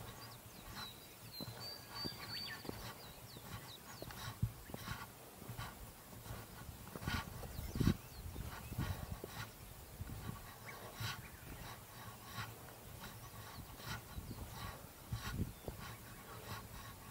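Footsteps of a hiker walking on a dirt trail, an irregular series of soft knocks about one or two a second, over a low rumble of wind and handling on the body-mounted camera.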